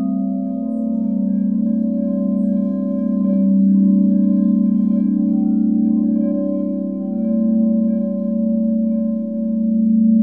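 Singing bowl ringing, a long sustained low tone with a slow wavering pulse and fainter higher overtones above it.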